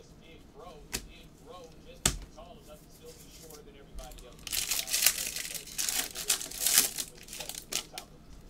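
Two sharp knocks, then for about three seconds the crinkling and tearing of a foil-wrapped trading-card pack being torn open.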